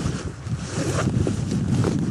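Wind buffeting the camera microphone in a steady low rumble, with a few faint footsteps on stony ground.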